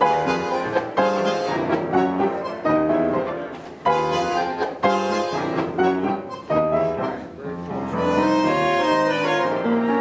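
Live Argentine tango music, with sharp accented attacks about once a second and a smoother, held passage near the end.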